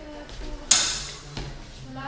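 Two steel training longswords clash once about two-thirds of a second in, a sharp clang with a short metallic ring.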